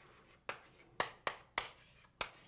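Writing by hand: four short, sharp strokes of a writing tool in the first second and a half, as a formula is written out.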